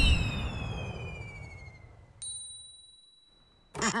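Cartoon sound effects: a falling whistle over a fading rumble, then about two seconds in a single bright ding that rings on for over a second.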